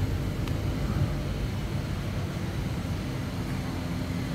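Steady low rumble of background machine or room noise, with a faint click about half a second in.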